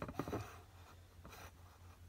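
Faint handling noise as a stainless steel tumbler is turned by hand: light rubbing, with a few soft taps in the first half-second and another about a second later.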